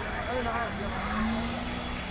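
Busy street ambience: a crowd of people talking over the noise of passing traffic.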